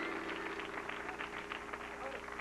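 Studio audience and cast clapping and cheering, fairly faint, as a dense patter of claps with a low steady hum underneath.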